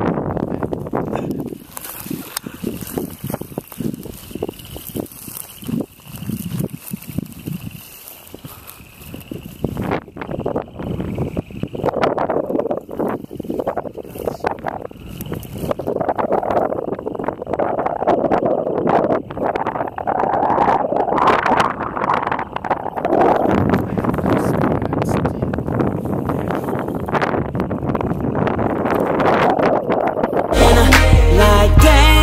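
Wind buffeting the camera microphone, with rustling footsteps through dry field grass. The sound gets louder and busier from about ten seconds in.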